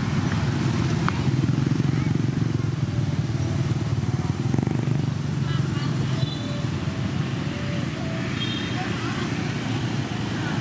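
A steady low motor drone, with a few short high chirps between about five and nine seconds in.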